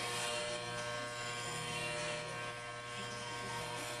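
Electric hair clippers buzzing steadily as they shave hair close to the scalp.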